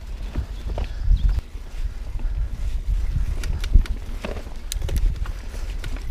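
Mountain bike rolling along a dirt trail: a steady low rumble with many irregular knocks and rattles from the tyres and frame.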